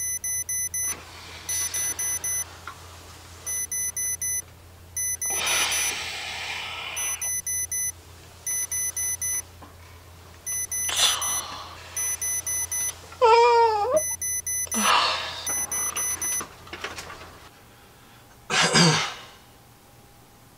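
Electronic alarm clock beeping in quick groups of four, a group about every second and a half, until it stops about three-quarters of the way in. In between are breathy noises and a man's wavering groan, and a louder noisy swell comes near the end.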